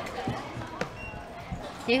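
A handheld barcode scanner giving one short, high beep about a second in, with a few light knocks and a dull thump from garments and hangers being handled around it.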